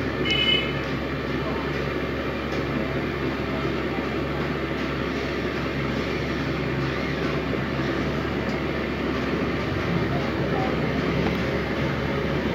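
Steady background hum and noise, with a brief high beep about half a second in.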